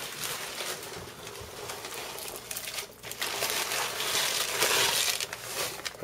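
Corn kernels poured from a plastic bag into a crock pot, a steady rustle and patter of small pieces falling in. It grows louder over the last few seconds.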